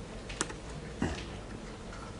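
Two short, sharp taps about two-thirds of a second apart, over a low steady room hum.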